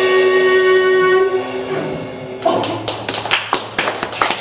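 A live indie rock band's last chord rings out and fades. About two and a half seconds in, a small audience starts clapping.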